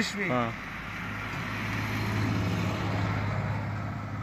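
A small pickup truck driving past on the road, its engine and tyre noise swelling to a peak midway and then fading as it goes by.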